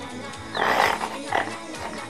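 Pig grunts over background music: a grunt about half a second long starting about half a second in, then a short one near the middle.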